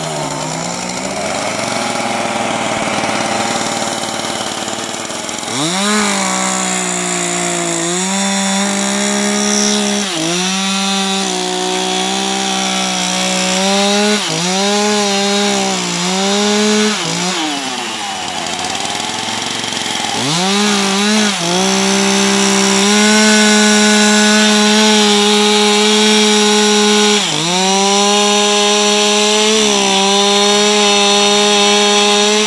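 Two-stroke chainsaw running at high revs as it cuts into a block of wood. Its pitch sags again and again as the chain bites into the wood and climbs back as the chain frees.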